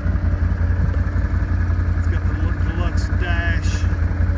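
Rotax 650cc V-twin engine of a 2016 Can-Am Outlander 650 ATV idling steadily and smoothly.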